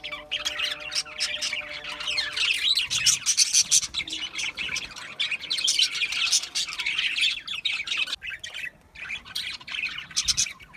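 A flock of budgerigars chattering and warbling, a dense stream of rapid, high chirps and squawks from many birds at once. There is a brief lull about eight seconds in, then the chatter picks up again.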